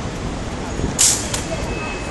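Steady city street traffic noise, broken about a second in by one brief, sharp hissing swish.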